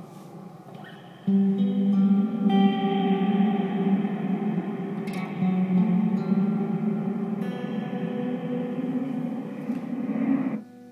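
Guitar played through the Eventide Space pedal's Black Hole reverb algorithm: long, washy sustained notes that hang and blend into one another. The sound jumps louder about a second in as new notes ring out, with smaller changes in pitch through the rest.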